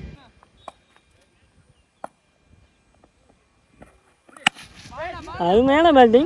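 Near silence with a few faint clicks, then about four and a half seconds in a single sharp crack of a cricket bat striking the ball. A player follows it with loud shouts of "no", the call not to take a run.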